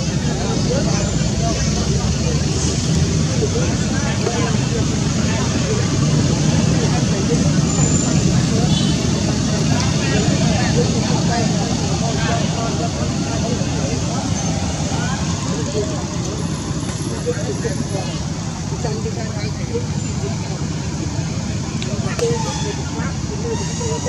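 A steady, busy background of indistinct overlapping voices mixed with road traffic noise.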